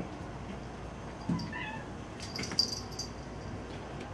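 Hungry house cats meowing, a few short faint calls in the middle of a quiet stretch, as they wait to be fed.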